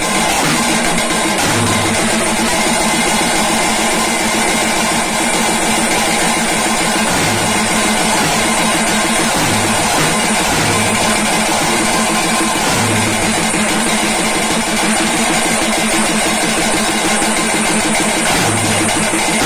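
Loud street drum band: stick-beaten drums and a barrel drum playing a fast, driving rhythm without a break, with clashing hand cymbals ringing over the top.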